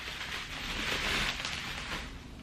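Bubble wrap and tissue paper rustling and crinkling as a small package is unwrapped by hand.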